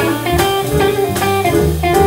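Live jazz band playing a bluesy number: electric guitar lines over upright bass and drums, with keyboard being played.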